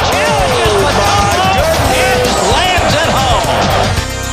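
Background music playing over basketball arena game sound, with many voices shouting and calling over a dense crowd noise.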